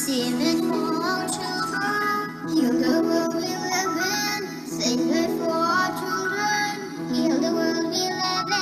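Children singing a melody, solo voices with vibrato, over an instrumental backing track.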